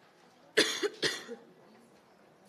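A woman coughing twice into a microphone, the coughs about half a second apart.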